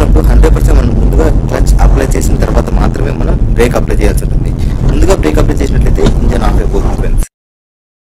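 A man talking over a steady low rumble; both stop abruptly about seven seconds in, leaving silence.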